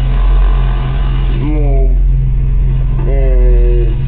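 A steady low hum, with a person's voice speaking in short phrases over it, about a second and a half in and again near the end.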